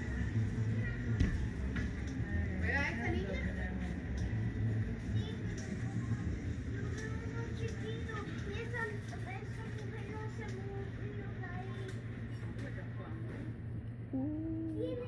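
Arcade background noise: indistinct voices and music over a steady low hum.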